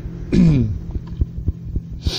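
Sound-effect vehicle engine idling with a steady low hum and regular throbbing pulses. About half a second in comes a brief tone that falls in pitch.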